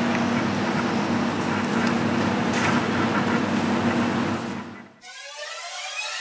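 Steady mechanical hum over a hiss, fading out about five seconds in. Music with rising sweeping tones starts just after.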